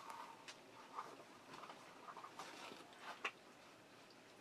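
Faint, scattered rustling and soft clicks of lightweight foam slip-on shoes being pulled onto the feet, with one slightly sharper click a little after three seconds in.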